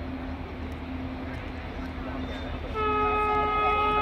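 Horn of the Vande Bharat Express sounding, starting about two-thirds of the way in as one long, steady multi-note chord over background noise.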